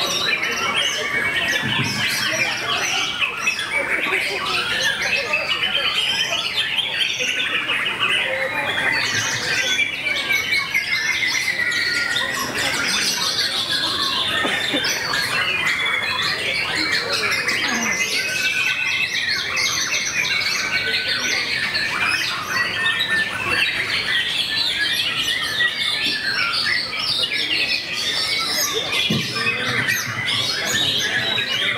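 White-rumped shamas singing without pause in a songbird contest, several birds overlapping in a dense stream of loud whistles, trills and chattering phrases.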